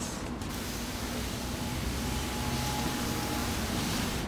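Hand pump sprayer, pressurised beforehand, spraying a continuous mist of clay lube onto a truck's body panel: a steady hiss that starts about half a second in.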